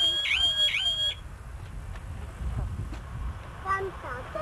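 Electronic car alarm siren sounding a fast repeating swoop, about two dips a second, then cutting off abruptly about a second in; low rumble remains afterwards.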